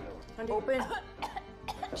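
Movie trailer soundtrack: music under short, broken vocal sounds.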